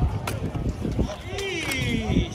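About three sharp clicks of a drill rifle being slapped and handled in an armed drill routine, with people's voices in the background.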